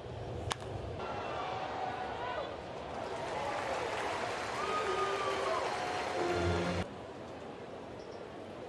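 Ballpark crowd noise, a steady hum of many voices, with one sharp pop about half a second in as the pitch reaches the plate. Just before the end the sound cuts abruptly to a quieter crowd hum.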